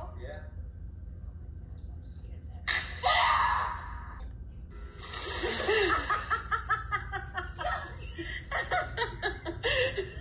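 Water from a bucket splashing over two girls, then the girls shrieking and laughing in quick, pulsing bursts that run on to the end.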